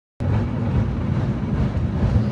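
Steady low rumble of a moving vehicle, mixed with wind noise on the microphone, starting abruptly a moment in.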